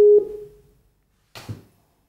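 A steady single-pitched video-call tone cuts off just after the start as the call connects, fading out over about half a second. A brief faint noise follows about a second and a half in.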